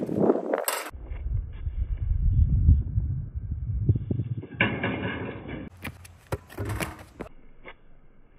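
Wind rumbling on the microphone, then a clank as the basketball is slammed into the metal rim about four and a half seconds in, followed by a few sharp thuds of the ball and rim.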